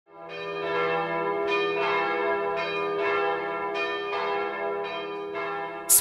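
Bells ringing in a series of strikes, roughly one every half second to a second, each tone ringing on and overlapping the next, after a quick fade-in.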